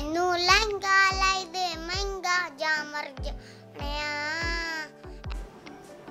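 A young girl singing a Punjabi song in long, wavering held notes over a backing track with a deep beat; the singing stops about five seconds in.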